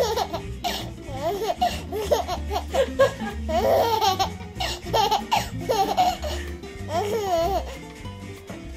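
A baby laughing in repeated short peals, over background music with a steady bass line.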